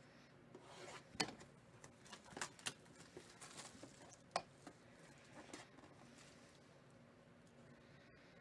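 Faint crinkling of plastic shrink wrap and rubbing of a cardboard card box as it is unwrapped by hand, with a scatter of short sharp clicks, most of them in the first six seconds.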